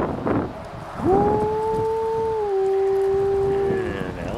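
A person howling in imitation of a wolf: one long held note that slides up at the start, then steps down slightly about halfway through and holds until it stops.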